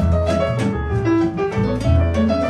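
Argentine tango played by a quintet of piano, bandoneon, guitar, violin and double bass, with strong double bass notes under the melody.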